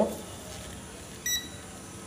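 Digital multimeter in continuity mode giving one short, high beep about a second in as its probes touch the circuit board: the sign of a connected, low-resistance path between the two probe points.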